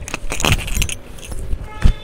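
Fabric rustling as a heavy embroidered frock is lifted and moved, with metallic jingling from bangles in the first half, then a single thump near the end.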